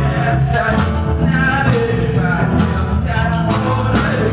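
A live rock band playing, with a singer's voice over the guitars and drums.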